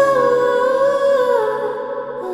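Background score: a slow hummed vocal melody of long held notes that step down in pitch about halfway through.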